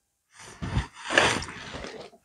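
A person sniffing through the nose to smell a wax melt: a short sniff, then a longer inhale about a second in.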